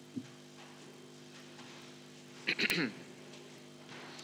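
A person coughs once, a little past halfway through, over a steady low hum in the room.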